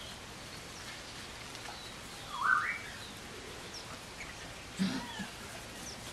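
Eight-week-old puppies squealing while they play-fight: a short, rising high-pitched squeak about two and a half seconds in, then a brief yelp near the five-second mark.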